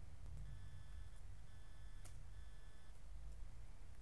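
Quiet steady low hum with a faint high electronic whine that comes and goes in three short stretches, and a single keyboard click about two seconds in as code is typed.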